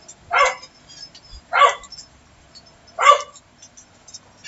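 A dog barking three times, about a second and a half apart.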